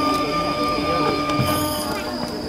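Kagura shrine music: a bamboo flute holds a high, steady note, with a drum stroke about one and a half seconds in.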